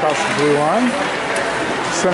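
Speech: a voice talking during the first second, over the steady background noise of the ice rink.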